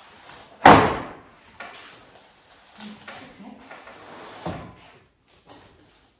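Wooden boards being knocked and set down on a stack on a wooden table: a loud wooden knock under a second in, a second knock about four and a half seconds in, with lighter knocks between.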